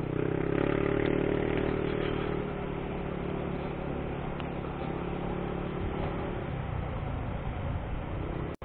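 Motorcycle engine running while riding, picking up speed in the first couple of seconds and then holding steady, over wind and road noise.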